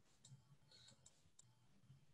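Near silence: room tone with a faint low hum and a few faint, short clicks.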